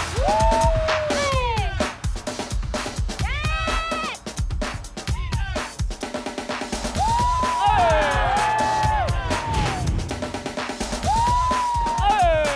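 Dance music for a popping routine: a drum beat with several sliding tones that rise and then fall, about a second in, near four seconds, twice between seven and nine seconds, and again near the end.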